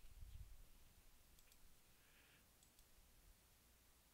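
Near silence: room tone with a few faint computer-mouse clicks, and a soft low thud in the first half second.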